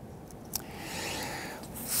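Quiet handling of a thread spool and paper card, with a single click about half a second in. Right at the end a hiss of breath starts as air is blown down through the spool's centre hole onto the paper.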